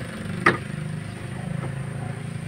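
A single sharp knock about half a second in, as the radiator is pushed into place against its mounts, over a steady low hum.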